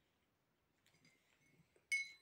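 A metal teaspoon stirring in a ceramic mug of coffee: faint scraping from about a second in, then a sharp, ringing clink of the spoon against the mug near the end.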